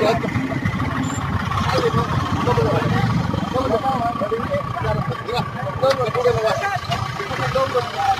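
Indistinct voices of several people talking over a steady low rumble, with a faint steady tone joining about three seconds in.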